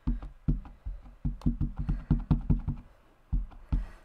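Plastic ink pad dabbed repeatedly onto a large clear stamp mounted on an acrylic block: a quick, irregular run of light taps and knocks, with a brief pause about three seconds in.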